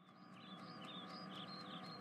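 Faint birds chirping: a quick run of short, high chirps that starts about a quarter of a second in and keeps going.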